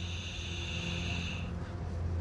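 A long draw on a pod vape: a steady, high whistling hiss from air pulled through the device, which stops about one and a half seconds in. A breathy exhale of the vapour follows.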